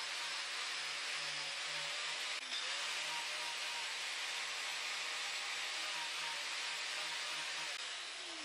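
Angle grinder with a carving disc cutting into the alder back of a guitar body, a steady grinding hiss that cuts off near the end.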